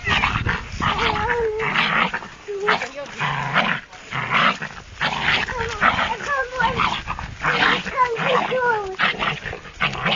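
Small dog barking repeatedly, in quick sharp barks, at a kitten held out of its reach, with wavering high-pitched cries between the barks around a second in and again from about six to nine seconds.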